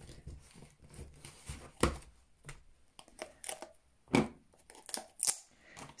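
Clear photopolymer stamps being peeled off and pressed onto acrylic stamp blocks: soft peeling and crinkling handling noises, with sharper clicks about two seconds in and again between four and five and a half seconds.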